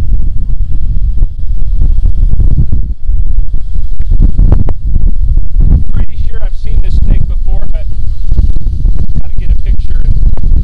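Strong wind buffeting the microphone, a heavy low rumble throughout, with a few knocks and clatters in the second half as the hinged lids of a snake box are opened.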